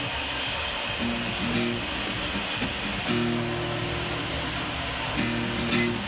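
An acoustic guitar is strummed in an instrumental passage of a rock song. The chords ring on and change about every two seconds.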